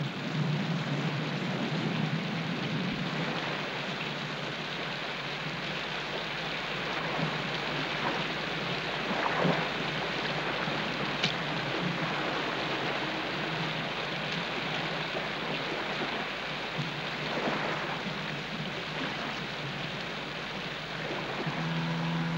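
Steady rain falling, a dense even hiss. An outboard motor's hum comes in near the end.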